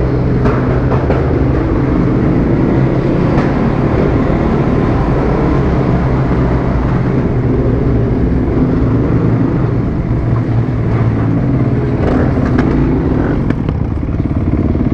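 Supermoto motorcycle's single-cylinder engine running at a steady, moderate speed as it is ridden through a concrete tunnel.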